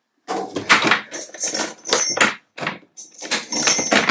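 Keys rattling in the lock of a back door as it is unlocked and opened, a run of clicks and metallic rattles with the handle and door being worked.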